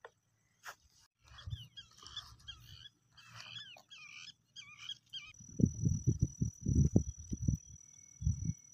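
An animal calling outdoors: short high calls with gliding notes, about two a second, for a few seconds. They are followed near the end by a run of loud low thumps.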